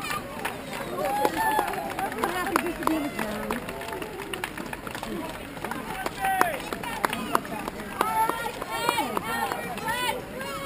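Many runners' footsteps slapping on asphalt as a crowd of runners passes close by, mixed with spectators' voices calling out and talking throughout.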